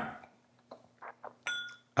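Small whiskey tasting glasses handled on a wooden bar top: a knock right at the start that fades out, a few faint handling sounds, then about one and a half seconds in a light glass clink that rings briefly.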